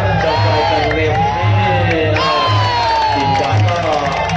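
Ringside crowd shouting and cheering during a clinch, many voices rising and falling together, with one long falling shout in the second half. Under it, traditional Muay Thai ring music (sarama) keeps a steady drumbeat.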